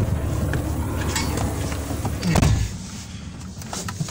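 A person getting into a pickup truck cab, with rustling and handling noises over a steady outdoor rumble, then the door slamming shut with a thud about two and a half seconds in, after which the outside noise is muffled.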